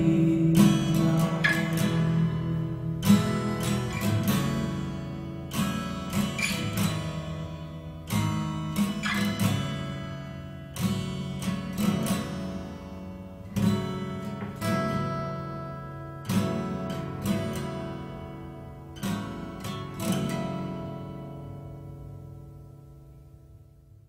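Music: acoustic guitar strumming slow chords, each left to ring out, with no singing, gradually fading out toward the end.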